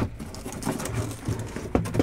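Cardboard shipping case being handled and lifted off a stack of sealed hobby boxes: rustling and scraping of cardboard with a few light knocks, the sharpest near the end.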